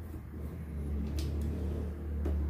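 Steady low rumble, with one faint, short scrape a little past a second in from a screwdriver working a screw in a door's metal latch plate.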